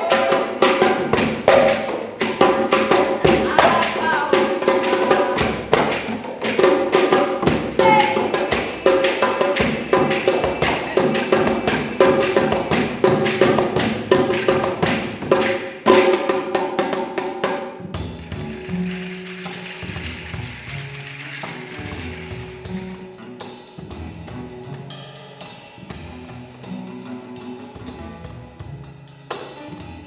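Hand drums, a djembe among them, played in a fast, dense rhythm that stops abruptly a little past halfway. After that comes a quieter passage of plucked low double-bass notes with light accompaniment.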